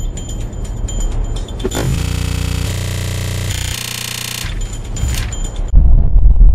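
Cartoon soundtrack: ticking, tense background music, interrupted for about two and a half seconds by a loud, harsh buzzing sound effect in three short segments. A loud low rumble starts near the end.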